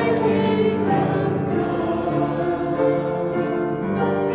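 A group of voices singing a slow hymn-like piece in long held notes, with piano accompaniment.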